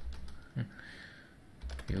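Computer keyboard keys being typed: a quick run of keystrokes at the start and another near the end.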